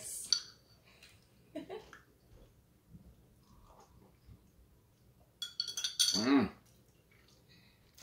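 A metal spoon clinks against a drinking glass near the start, then faint small sounds of sipping, and a short voiced "mm" about six seconds in.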